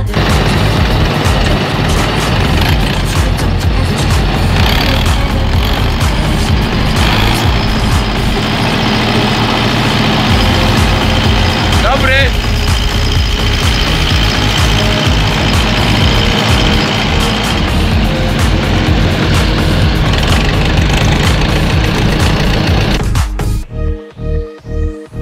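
Loud, steady machinery noise of a Claas forage harvester chopping maize and blowing it into a trailer, with tractors running alongside. A brief rising whine comes about halfway through.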